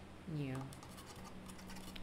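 Faint, light scratchy ticks of a paintbrush working on watercolour paper, after a brief spoken "yeah".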